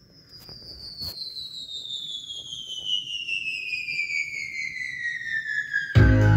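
A falling whistle tone, gliding steadily down in pitch and growing louder, played from a vinyl record on a Pioneer CEC BD-2000 belt-drive turntable. A single click comes about a second in.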